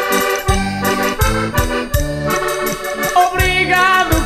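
Instrumental passage of a Portuguese folk song: a concertina (diatonic button accordion) plays sustained chords and a melody over a steady low beat, about one beat every 0.7 seconds, with light percussion.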